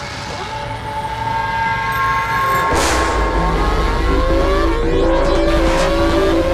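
Formula One car engine sound: a steady hum, a loud whoosh about three seconds in, then the engine accelerating, its pitch climbing and dropping back several times as it shifts up through the gears.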